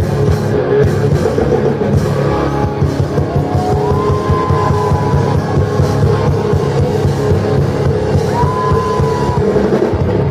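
A rock band playing live with electric guitar and drum kit. A high lead line slides up into a long held note about four seconds in, and again near the end.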